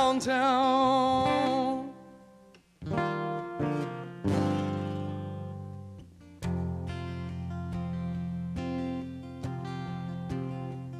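A male singer holds a sung "oh" with vibrato that ends about two seconds in; after a brief pause, acoustic guitar chords are strummed and left to ring, a new chord struck every second or two, as an instrumental break between verses.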